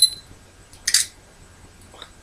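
Sony Cybershot compact camera taking a picture: a short, high beep at the start, then its shutter sound, a brief burst, about a second in.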